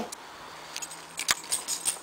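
A bunch of keys jangling in a hand: a few light clinks and clicks, with one sharper click about a second and a quarter in.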